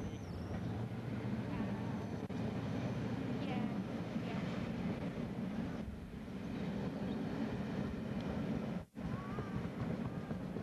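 A Class 67 diesel-electric locomotive working hard up a steep bank, a steady low engine drone under load. The sound cuts out for an instant about nine seconds in.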